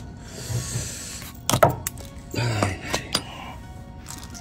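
Screwdriver prying at a large screw stuck in a tyre tread: about a second of scraping, then a sharp click, and a few more clicks near the end.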